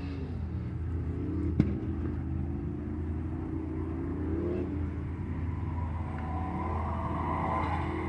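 Distant stunt-car engines revving up and down during burnouts and skids, over a steady low rumble. A single sharp knock comes about one and a half seconds in, and another car's engine grows louder near the end.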